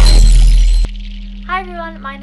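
Loud editing transition effect: a deep bass hit under crackling, shattering noise that cuts off suddenly just under a second in. A short bit of voice follows near the end.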